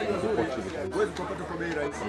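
A man speaking into press microphones.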